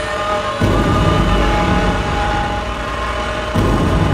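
Dark, droning live music with voice and keyboard: held tones over a heavy low rumble. A deep boom comes in about half a second in and again near the end.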